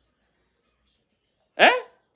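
Near silence, then a man's single short questioning 'Hein?' rising sharply in pitch, about one and a half seconds in.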